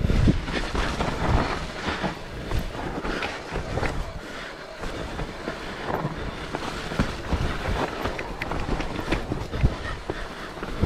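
Mountain bike descending a rough, muddy forest trail: tyres rolling over dirt and roots with a constant rattle and clatter from the bike, struck through with knocks over bumps, heaviest right at the start.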